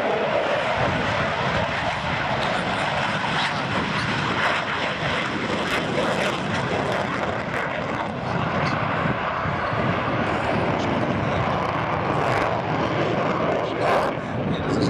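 Dassault Rafale fighter's twin Snecma M88 jet engines running in afterburner as the jet climbs and turns overhead: loud, steady jet noise with scattered crackle.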